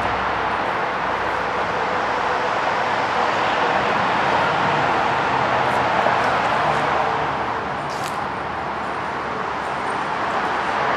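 Steady outdoor background noise, an even rush with no distinct events, with a brief faint high squeak about eight seconds in.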